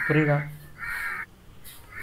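A man's voice drawing out a short wordless vocal sound, then a brief higher-pitched sound about a second in, and quiet after that.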